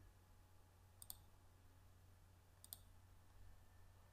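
Two faint computer mouse-button clicks about a second and a half apart over a low steady hum, the clicks of filling areas with a drawing program's fill tool.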